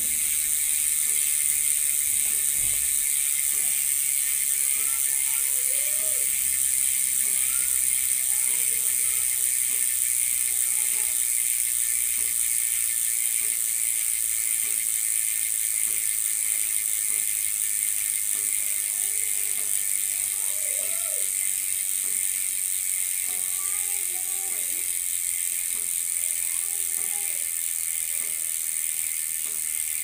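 Freehub of a GUB 6-pawl bicycle rear hub buzzing as the wheel spins fast, the pawls clicking over the ratchet so quickly that they blend into one steady, high-pitched buzz that fades slightly.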